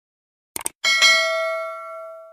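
Subscribe-animation sound effects: a quick double click about half a second in, then a bell ding that rings on and slowly fades away.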